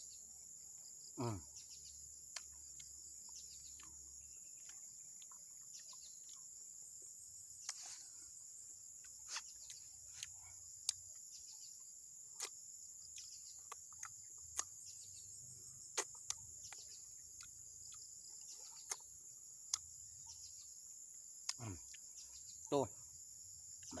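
Faint, steady high-pitched drone of insects, with scattered short, sharp clicks and smacks of a man eating close to the microphone. A brief hummed 'mm' comes near the start and a short word near the end.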